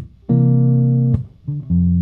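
Hollow-body electric guitar playing a slow jazz-blues comp: a ringing C9 chord is held for most of a second, then cut short by a short muted strum, and the next chord comes in about a second and a half in.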